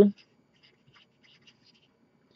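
Marker pen writing on paper: a few faint, short scratchy strokes as numerals are written.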